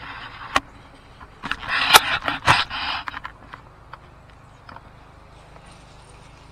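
A scraping, rustling burst with a couple of sharp clicks, lasting about a second and a half, as objects are handled; a single click comes before it.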